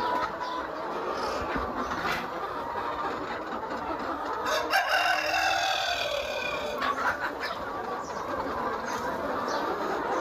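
A large flock of young Sonali cross-breed chickens clucking and calling together without pause. About halfway through, one long crow rises above the flock for roughly two seconds.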